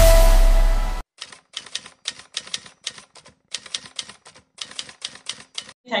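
Intro music cuts off about a second in. It is followed by rapid typewriter-style key clicks in short bursts of several strokes each, a typing sound effect.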